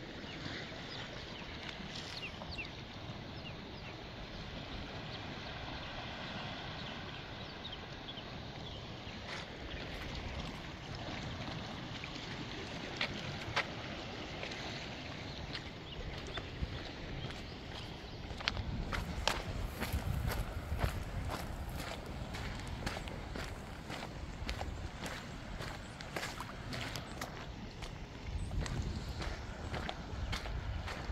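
Footsteps on a beach of coarse sand, broken shell and gravel, starting sparsely about a third of the way in and coming steadily in the second half, over steady outdoor noise. Wind rumbles on the microphone now and then.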